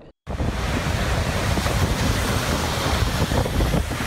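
Storm wind and breaking sea waves, a loud steady rush of wind and surf with wind buffeting the microphone, starting abruptly just after the start.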